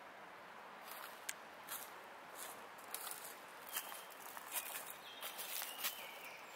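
Footsteps crunching through dry leaf litter on a forest floor, irregular steps starting about a second in, over a faint steady hiss.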